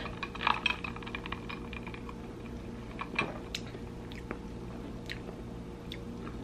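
Quiet mouth sounds of sipping and tasting a drink through a straw: a cluster of small clicks and smacks in the first second, then a few isolated ticks, over a faint steady low hum.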